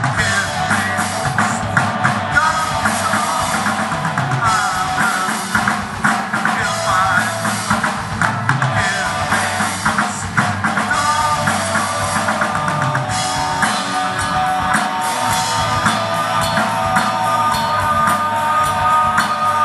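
A rock band playing live, with a drum kit and a bending melodic lead line over a full, steady band sound.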